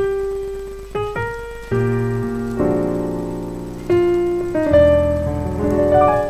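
Yamaha digital piano played with a piano voice: a single held note, then notes and chords struck at uneven intervals in a slow, free-timed jazz phrase, each left to ring and fade, with a deeper bass chord coming in near the end.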